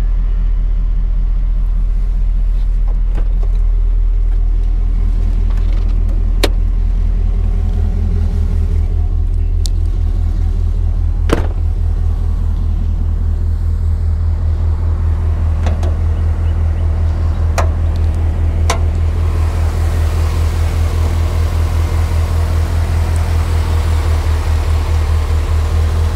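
A 2008 GMC Sierra 1500's V8 with aftermarket shorty headers and exhaust, idling steadily at about 600 rpm: a deep, even low pulse. A few sharp clicks and knocks sound over it, the loudest about 11 seconds in.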